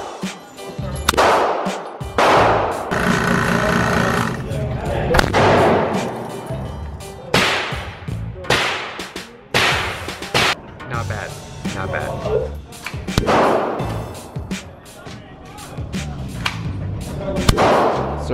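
A semi-automatic pistol firing single shots at irregular intervals, each crack trailing off into the echo of an indoor range, with background music throughout.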